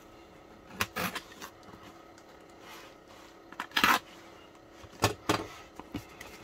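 Cardboard parcel being handled and turned over: a few short knocks and rubs of the box against hands and desk, the loudest and longest about four seconds in.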